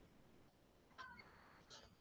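Near silence: faint pen scratching on paper as an equation is written, with a brief faint high squeak about a second in.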